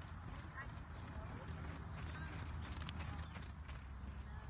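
Hoofbeats of a ridden horse moving on a sand arena.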